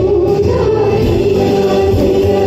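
A woman singing a Gujarati song through a microphone over a karaoke backing track, holding a long note.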